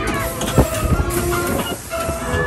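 Amusement-park dark-ride vehicle rattling along its track, with a sharp knock about half a second in and a few smaller clacks after it.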